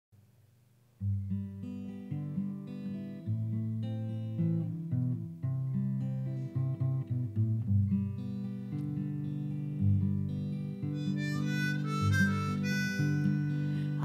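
Acoustic guitar and harmonica playing a song's instrumental introduction. The guitar starts about a second in, and the harmonica comes in above it near the end.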